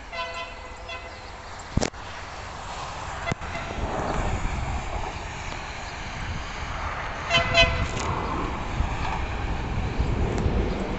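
Train horn sounding from an approaching train: a blast of about a second at the start and two short blasts about seven seconds in, over a low rumble that grows louder.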